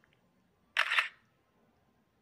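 Smartphone camera shutter sound as a document scanner app takes a photo: one short double click about three-quarters of a second in.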